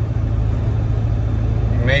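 Steady low drone of a pickup truck's engine and road noise, heard from inside the cab while driving.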